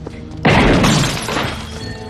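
Glass shattering: a sudden loud crash about half a second in that rings out and fades over about a second, over a tense film score.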